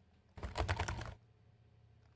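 Laptop keyboard typed on in one quick burst of rapid keystrokes, less than a second long, as random letters are mashed into a text field.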